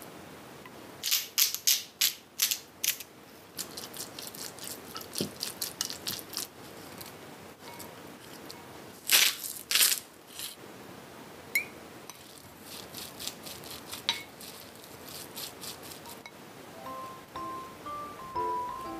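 A utensil clicking, tapping and scraping against a glass mixing bowl as food is stirred and mixed, in quick runs of taps with two louder knocks about halfway through. Quiet music comes in near the end.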